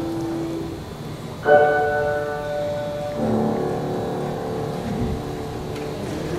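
Grand piano playing slow chords: one fades out early, a fresh chord is struck about one and a half seconds in, and another about three seconds in, each left to ring and die away.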